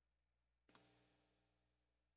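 Near silence broken by one faint computer mouse click, a quick double tick about two-thirds of a second in.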